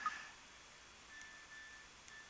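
Quiet room tone with a brief soft sound right at the start, then a faint, steady high-pitched tone that sets in about halfway through.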